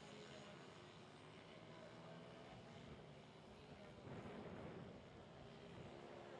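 Faint, distant mini racing motorcycles running around the track, their small engines heard as a low hum whose pitch shifts slowly, a little louder about four seconds in.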